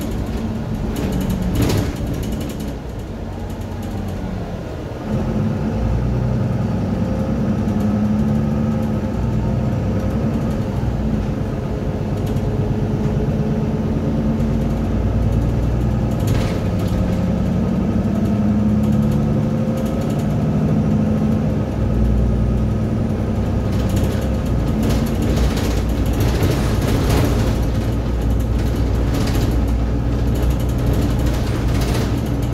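Mercedes-Benz Citaro single-deck bus heard from inside the saloon: the diesel engine and drivetrain running as the bus drives, getting louder about five seconds in as it pulls harder, with interior panels and fittings rattling and clicking now and then.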